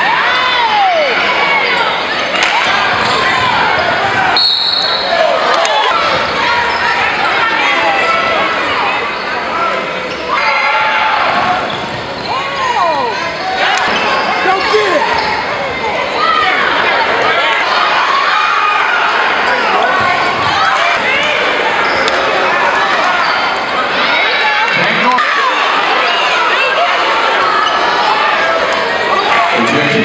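Live basketball game in a large gymnasium: a ball bouncing on the hardwood court amid the voices of players and spectators. A short, high whistle blast sounds about four seconds in.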